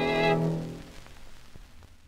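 Violin and piano ending a movement: the held closing chord breaks off about a third of a second in and dies away. After it comes faint hiss and a few clicks from the surface noise of an old recording.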